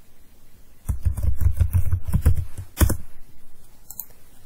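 Typing on a computer keyboard: a quick run of keystrokes lasting about two seconds, starting about a second in, with one sharper key press near the end.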